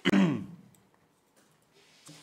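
A person clears their throat once, briefly and loudly, right at the start, the pitch dropping as it goes.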